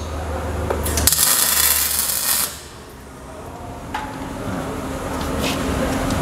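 Electric welding arc hissing for about a second and a half as a short weld is laid on a steel motorcycle frame tube, after a low steady hum.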